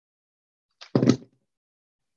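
A single short clunk about a second in, the plastic hot glue gun being set down on the work table. It is preceded by a faint tick, with silence otherwise.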